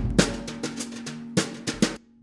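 Drum kit playing the last bars of a jazz-funk song, snare and kick hits over a held low note. The playing fades, then comes a few accented hits near the end and a sudden stop.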